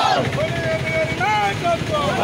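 A group of protesters chanting slogans in unison, with long, drawn-out shouted calls.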